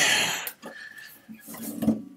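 A guitar being taken down and handled. A burst of rustling comes in the first half-second, followed by light knocks and clatter.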